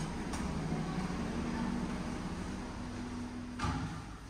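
A steady low mechanical hum with a few held low tones, like building air handling, with a faint click just after the start and a louder knock near the end.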